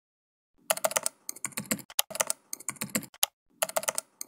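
Computer keyboard typing: rapid key clicks in short bursts with brief pauses between them, starting about half a second in.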